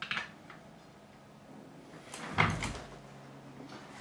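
Workshop handling noise: a light click at the start, then a louder short knock and scrape with a low thud a little over two seconds in.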